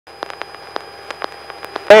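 Faint electrical hiss carrying a thin steady high whine, broken by scattered sharp clicks, as heard through a light aircraft's headset intercom feed with no engine noise. A man's voice cuts in right at the end.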